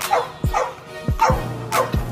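A young dog yipping about five times in short yelps that fall in pitch as it jumps at a hanging tug toy, over hip hop music with a steady drum beat.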